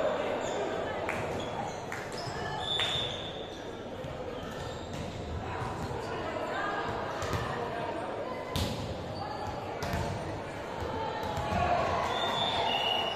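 Volleyball thumping against hands and the sports-hall floor, about five sharp thumps spread through, over players' echoing voices and calls. A few short high squeaks come through.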